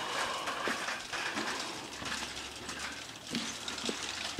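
Footsteps on the wooden slats of a suspension footbridge, the boards knocking and rattling underfoot, with a few sharper knocks over a steady high hiss.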